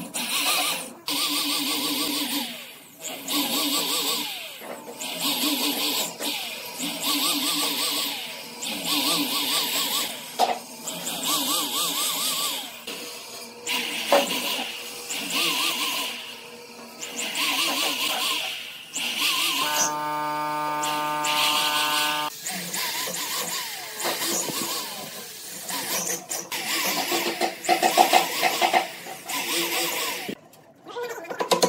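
Electric drill boring a row of holes into the edge of a pine board, one hole about every two seconds: each burst is the motor whining up, dipping in pitch as the bit cuts into the wood, then stopping. Around two-thirds of the way through the drill runs a little longer at a steady pitch.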